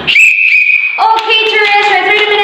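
A single blast on a hand-held whistle, one steady high tone lasting under a second, followed by a woman's voice calling out loudly and drawn-out.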